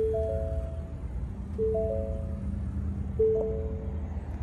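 The 2022 Ford F-150's cabin warning chime, a two-note ding repeating about every second and a half, sounding while the driver's door stands open. A low steady rumble runs underneath.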